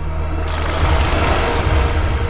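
Background film music with a steady low drone. About half a second in, a broad rushing noise starts under it and holds steady.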